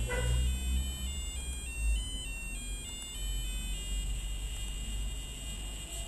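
A BBC micro:bit beeping on and on in electronic tones that step up and down in pitch. The program already on the board keeps it sounding until new code is flashed.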